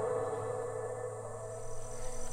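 Ambient background music with sustained, ringing tones, fading out. Near the end a steady high-pitched insect drone comes up beneath it.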